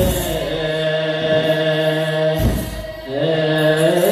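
Group of youths singing wereb, Ethiopian Orthodox liturgical chant, together on long held notes. The singing breaks off briefly a little before three seconds in, then comes back.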